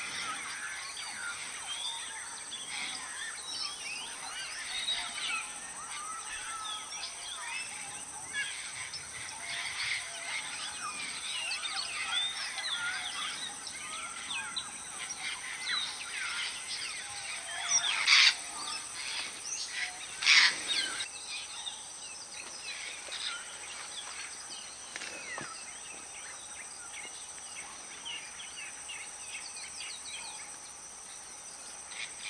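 A flock of African grey parrots calling: many overlapping whistles and chirps, with two loud, harsh calls a couple of seconds apart past the middle. A steady high insect hum lies underneath.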